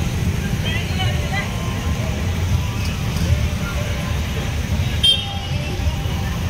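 Auto-rickshaw engines running with a steady, uneven low rumble, over faint crowd voices. A short high beep sounds about five seconds in.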